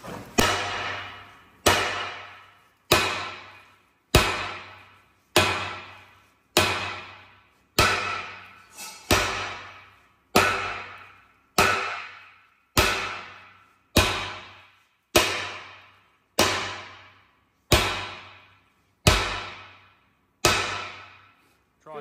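Heavy hammer blows on a plate welded to a steel tank hull, about eighteen strikes at an even pace of roughly one every second and a bit. Each blow rings and fades. The blows are working the plate's weld loose until it starts to crack.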